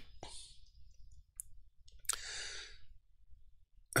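A man sighing out a breath about two seconds in, with a fainter breath just before and a couple of small clicks.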